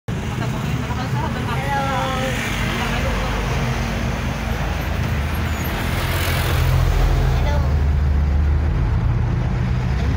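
Steady engine and road noise of a moving vehicle heard from inside its passenger cabin, a low hum that grows louder about six or seven seconds in.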